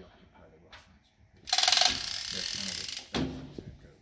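Winch mechanism of a missile-loading trolley being worked to hoist an RBS-15 anti-ship missile onto a Gripen wing hardpoint: a loud, rapid mechanical run lasting about a second and a half, starting midway and ending in a knock.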